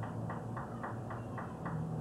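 Rhythmic ticking, about four ticks a second, over a low steady hum; the ticking stops near the end.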